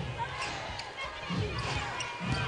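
A basketball being dribbled on a hardwood arena court during live play, a few low thumps over general arena noise.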